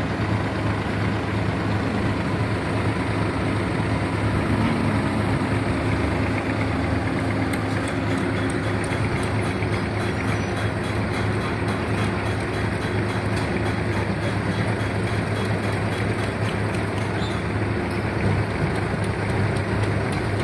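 A steady, unbroken low engine hum under an even haze of noise.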